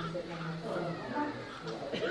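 A newborn baby crying in short, wavering wails.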